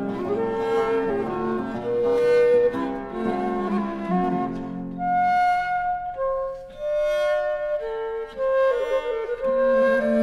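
Baroque chamber trio on period instruments playing a chaconne: a traverso (c. 1680 baroque flute by Chattillion), a viola da gamba and a theorbo. About halfway through, the low bowed line falls away and the flute carries on over a thinner accompaniment. The fuller low part comes back near the end.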